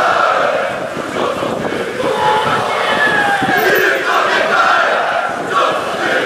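Large marching crowd of speedway supporters chanting and shouting together, loud and continuous.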